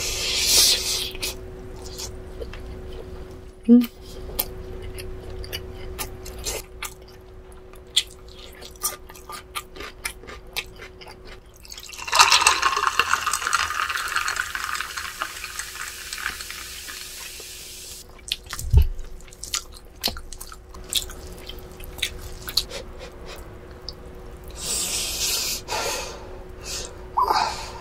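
Cola poured from a bottle into a glass, splashing and fizzing for about six seconds starting about twelve seconds in. Around it, close-miked eating sounds with many small clicks, and a single low thump soon after the pour.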